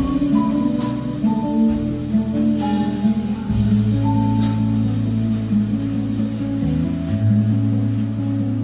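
Live jazz band playing: nylon-string acoustic guitar, keyboard and bass over drums, with the bass holding long low notes and a few cymbal strikes.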